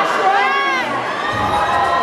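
Audience cheering and shouting, with one loud voice whooping in the first second, its pitch rising and then falling.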